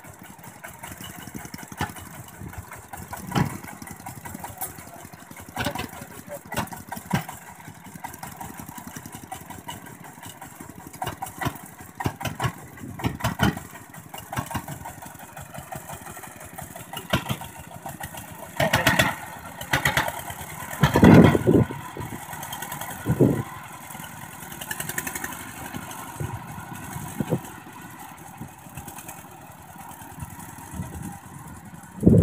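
Single-cylinder diesel engine of a two-wheel walking tractor running as the machine works through deep paddy mud. Irregular knocks and clanks come throughout, with a cluster of louder bursts about two-thirds of the way through.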